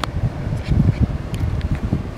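Low, uneven wind-like buffeting on the microphone, with a sharp click right at the start.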